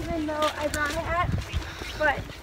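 Indistinct voices talking, with a low rumble on the microphone underneath.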